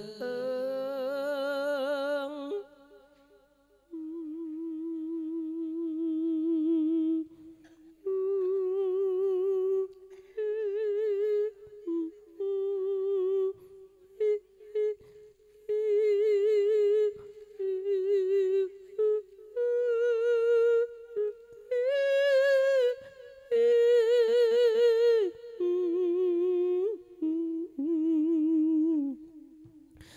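A monk's Isan sung sermon (thet lae): a long melismatic vocal line with no clear words, held notes with heavy vibrato sliding between pitches. The line is broken into phrases, with a short break about three seconds in.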